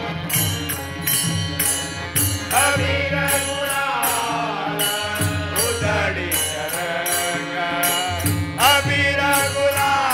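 Devotional bhajan sung by a group of men, with the voices swelling in a few seconds in and again near the end. A harmonium drones underneath, and a steady beat of hand percussion keeps time.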